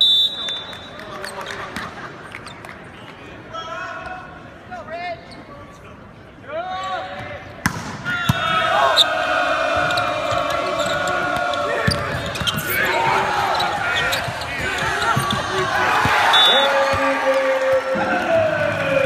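Volleyball rally in a gym: a short referee's whistle blast starts it, the ball is struck with sharp smacks, and players and crowd shout, getting loud from about eight seconds in. A second short whistle comes near the end.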